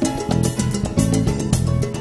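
Cuban timba band playing live, with drum kit and congas keeping a busy beat under held bass and chord notes.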